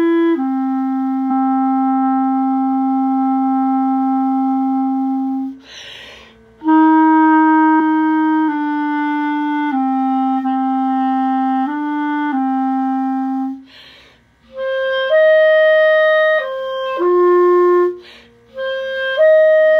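Solo clarinet playing the tenor saxophone 2 part an octave higher, a slow melody in 6/8 in G made of long held notes that step from pitch to pitch. The phrases break twice for a quick breath, about six seconds in and again near fourteen seconds.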